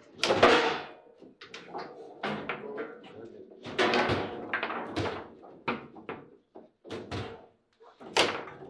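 Table football in fast play: a run of sharp clacks and thuds as the ball is struck by the plastic figures and the rods bang against the table. The loudest knocks come just after the start and again about four seconds in.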